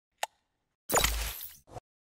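Sound effects of an animated logo intro. A tiny click comes first, then about a second in a louder hit with a quick falling sweep and a low thud, then a short click near the end.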